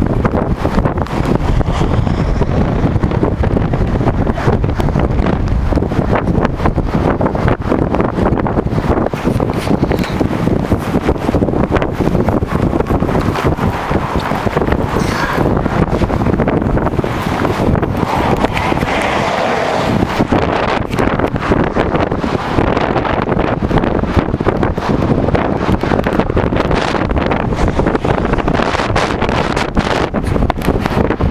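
Strong wind buffeting the microphone: a loud, unbroken rumbling rush.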